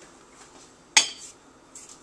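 A metal mixing spoon clinking against hard kitchenware: one sharp clink about a second in that rings briefly, with a couple of faint knocks around it.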